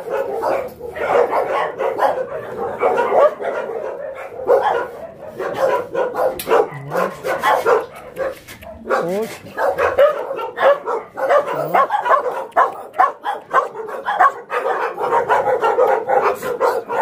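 Many shelter dogs barking at once, their barks overlapping without a break.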